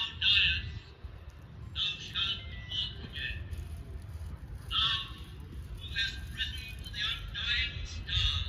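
Short, high bird calls repeated in irregular clusters over a low steady rumble.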